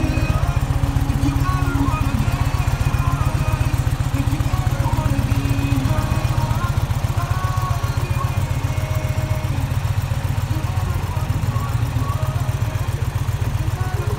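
Indian Challenger Dark Horse's V-twin engine idling steadily, with a fast, even low pulse.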